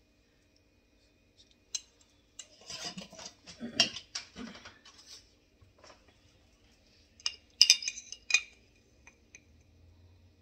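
A glass jar handled on a kitchen counter: its metal screw lid is twisted off and set down with a run of scraping clicks, then a small metal spoon clinks sharply against the glass a few times near the end.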